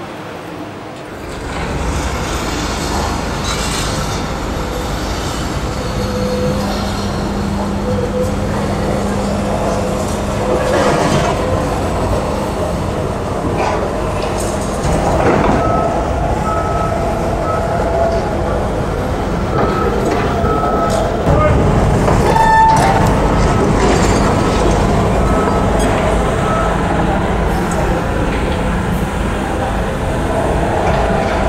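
Demolition-site and town-centre ambience: heavy machinery and traffic running as a steady low rumble. In the second half, short high electronic warning beeps sound repeatedly in irregular runs.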